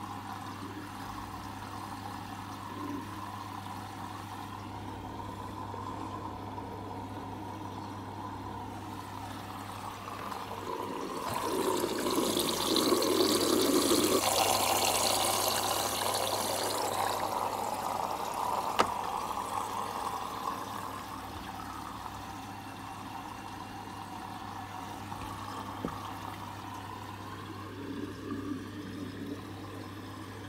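Logik L712WM13 washing machine taking in water for its final rinse: a rush of water through the detergent drawer swells up about a third of the way in and fades away over the next several seconds, over a steady low hum.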